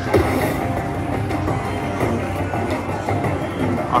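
Slot machine's bonus-round music and effects playing as a hold-and-spin respin runs.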